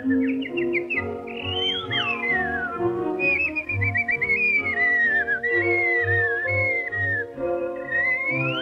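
Orchestral cartoon score: a high whistled, bird-like melody slides up and down in pitch over held chords and a low pulsing bass.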